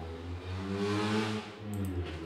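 A passing vehicle: a low engine hum with road noise that swells to a peak about a second in and then fades.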